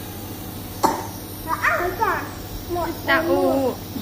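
A single sharp cough about a second in, then short, high-pitched voice sounds, likely from the toddler, over a steady low hum.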